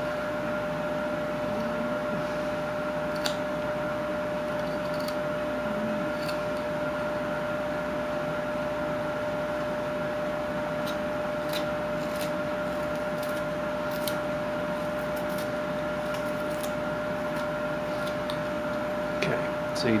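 Carving knife whittling a wooden block by hand: scattered faint clicks as the blade slices off chips. A steady hum with a constant whine runs underneath and is the loudest sound.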